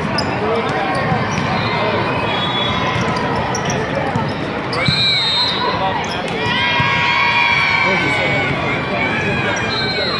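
A volleyball rally in a large hall: the ball struck by hands and arms with sharp smacks, with players and spectators shouting over it. A burst of shouting runs from about six and a half to eight seconds in, as the point is won.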